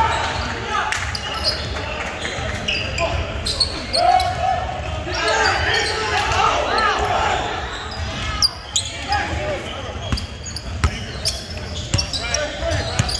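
Sounds of a basketball game in a large, echoing gym: a basketball bouncing on the hardwood court, with sharp impacts standing out in the second half, under the shouts and chatter of players and spectators.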